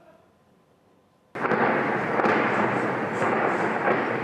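Near silence, then a dense, steady crackling din that starts suddenly about a second and a half in and keeps up without a break.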